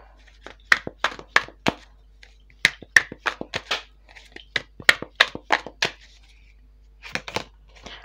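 A deck of tarot cards being shuffled and handled: sharp card clicks and flicks in quick runs of several, with short pauses between.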